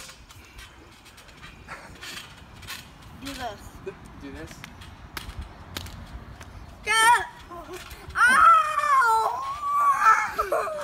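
Children on a backyard trampoline: faint voices and a few soft knocks at first, then about seven seconds in a boy lets out loud, high-pitched yells and shrieks that carry on to the end.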